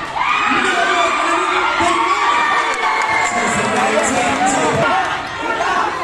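Crowd of spectators shouting and cheering at a basketball game, many voices overlapping; the noise dips briefly about five seconds in, then picks up again.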